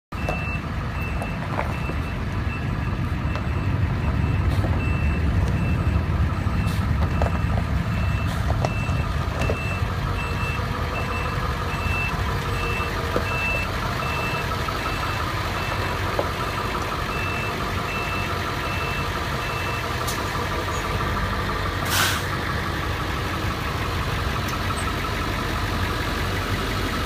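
A truck's backup alarm beeping steadily, about one and a half beeps a second, over a diesel truck engine idling; the beeping stops about 20 seconds in. A single sharp click follows about two seconds later.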